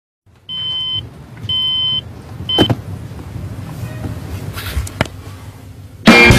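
Electronic alarm clock beeping: two steady half-second beeps a second apart, then a third cut short by a knock as it is switched off. Faint rustling follows, with a single click near the end.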